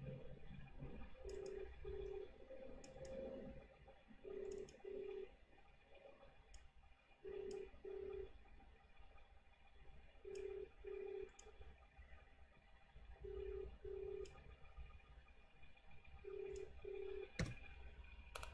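Faint Australian telephone ringback tone: a low double ring, two short tones about half a second apart, repeating every three seconds, meaning the called line is ringing and not yet answered. Scattered soft computer clicks, with a sharper click near the end.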